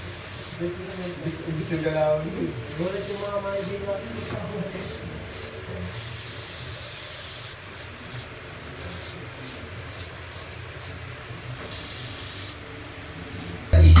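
Aerosol spray-paint can hissing in a series of short bursts, with a few longer sprays of about a second, as black outline lines are sprayed onto a wall.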